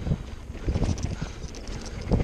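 Mountain bike rolling down a rough dirt trail, with tyre noise and irregular knocks and rattles from the bike as it hits bumps. The loudest cluster of knocks comes a little past halfway. Wind rumbles on the microphone.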